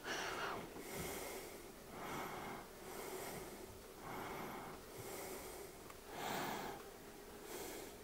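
A person breathing hard and evenly out of shot, about one breath a second, faint.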